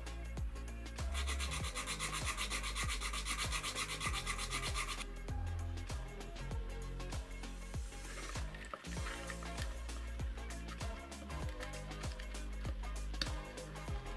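Background music with a steady beat and stepping bass notes. From about a second in, a loud rasping hiss lies over the music for about four seconds, then stops abruptly.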